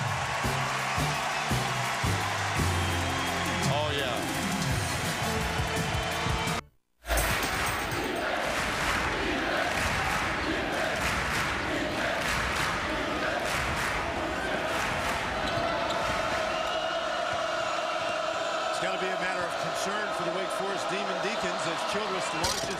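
Crowd noise in a packed college basketball gym, with a ball bouncing on the hardwood, and music for roughly the first seven seconds. The sound cuts out for a split second about seven seconds in.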